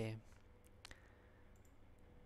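A computer mouse click about a second in, followed by a couple of fainter ticks, over low room noise.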